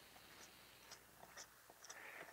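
Near silence, with a few faint short ticks from a stiff, cut-down artist's brush as its bristles are pulled back with a finger and let spring, flicking thinned chalk paint onto card as fly-speck spatter.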